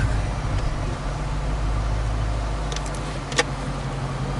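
6.4-litre 392 Hemi V8 of a Dodge Charger Scat Pack idling steadily, a low hum heard from inside the cabin, with a few light clicks about three seconds in.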